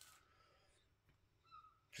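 Near silence: room tone, with a faint brief squeak about one and a half seconds in.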